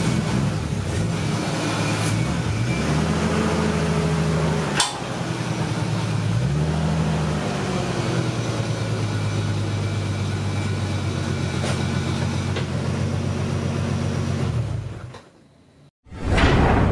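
Nissan Skyline R32 GT-R's single-turbo RB26 straight-six idling, its revs rising briefly twice in light throttle blips, with one sharp tick about five seconds in. The engine sound fades out near the end.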